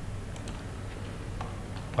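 A few faint computer-mouse clicks over a steady low hum.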